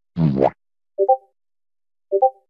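A short rising, boing-like comedy sound effect, then about a second later a quick Discord message notification chime.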